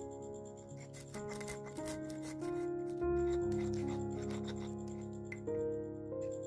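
Stone pestle crushing and grinding garlic, peppercorns and salt in a stone mortar (Indonesian cobek and ulekan): repeated rough rubbing scrapes, thickest about one to three seconds in, over background music.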